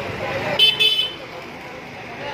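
A vehicle horn gives two short, high-pitched toots about half a second in, over steady street noise and voices.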